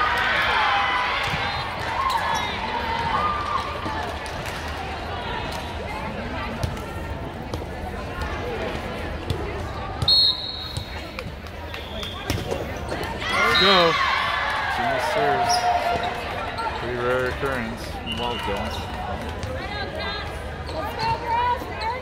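Volleyball play: the ball struck and bouncing, with players' shouts and calls. A short, sharp high whistle blast comes about ten seconds in, with a burst of loud calling a few seconds later.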